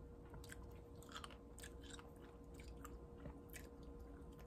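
Faint chewing of fresh blueberries, heard as irregular small mouth clicks several times a second.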